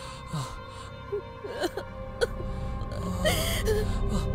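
A woman crying: gasping breaths and broken whimpering sobs. Under them is a sustained background music score that swells toward the end.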